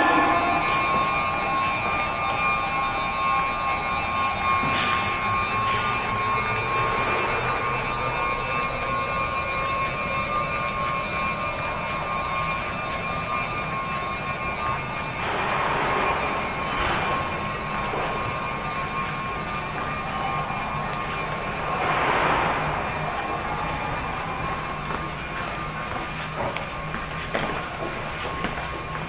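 Sapporo subway Tozai Line train standing at the platform with its doors open, giving a steady hum with several high steady whines from its onboard equipment. Two swells of rushing noise come about halfway through and again later.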